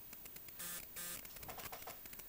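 Faint handling noise: a quick run of small clicks with two short bursts of rustle, as a knob on the bench equipment is turned and handled.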